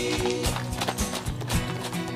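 A horse's hoofbeats clip-clopping on a gravel track, several strikes a second, over background pop music with held tones.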